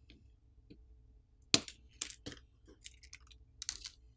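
Small sharp clicks of a smartphone's display flex cable connector being popped off the board with a plastic pry tool. The loudest snap comes about one and a half seconds in, followed by a few lighter clicks and taps as the cable is lifted away.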